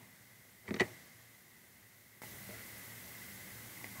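Low room tone broken by one short sharp click, likely a mouse click, a little under a second in. A faint steady hiss starts about halfway through.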